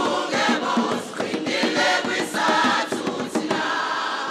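A choir singing, many voices together in harmony.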